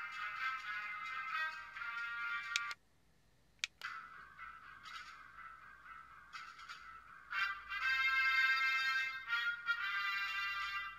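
Ultra Replica Beta Capsule toy playing its built-in background-music tracks through its small speaker, cycled by short presses of the B button. One track cuts off a little under three seconds in. A click follows, and the next track starts, quiet at first and louder from about seven seconds in.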